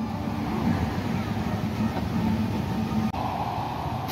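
Steady road-traffic and engine noise of motor vehicles on a busy road, changing abruptly a little after three seconds in.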